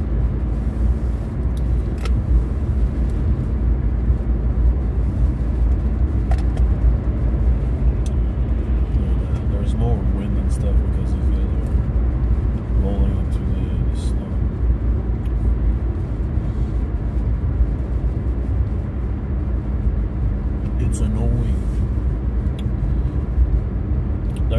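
Steady low road and engine rumble heard inside the cabin of an Infiniti Q50 Red Sport 400, with its twin-turbo 3.0 V6, cruising on a snow-covered highway. A few faint clicks sound now and then.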